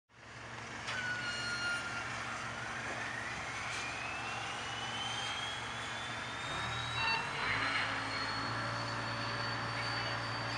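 A steady low mechanical hum with a thin high whine that climbs slowly and smoothly in pitch over several seconds, like a machine spinning up.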